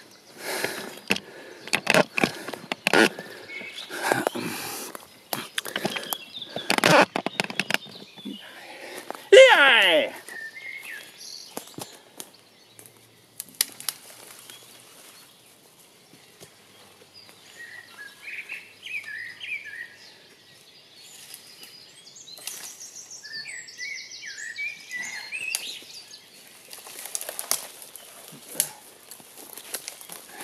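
Crunching and rustling on the forest floor, loud and irregular for the first eight seconds, then a short falling pitched cry about nine seconds in. Later, small birds chirp high in the trees.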